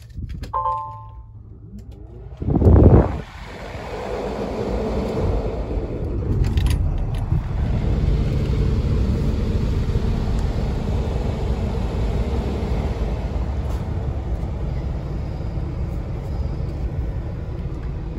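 A short electronic beep from the dash, then the 15-litre inline-six Cummins X15 diesel of a 2023 Peterbilt 579 cranks and catches about three seconds in, heard from inside the cab. It then settles into a steady idle.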